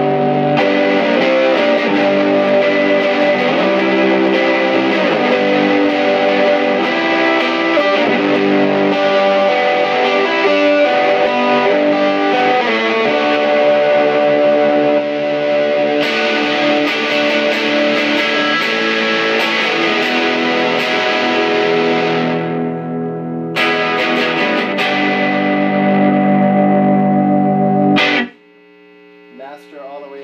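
Electric guitar played through a Peavey Classic 20 tube combo amp with its volume all the way up and master at three, giving an overdriven tone on sustained chords and riffs. The playing stops abruptly near the end, leaving faint lingering tones.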